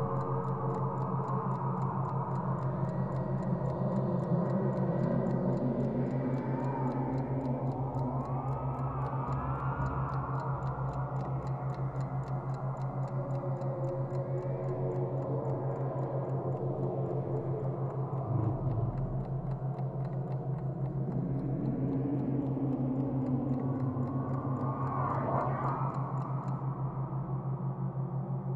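Steady ticking like a clock, with evenly spaced ticks all through, over a continuous low hum and slowly sliding synthesizer tones.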